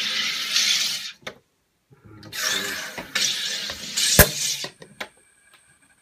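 SodaStream Jet carbonating a bottle of tap water, in the last two of three presses on its top button. CO2 gas hisses into the bottle until about a second in, then stops. After a short pause a second hiss starts about two seconds in and ends with a sharp, loud snap.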